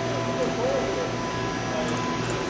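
Busy exhibition-hall background: distant chatter and music over a steady hum, with a faint click near the end.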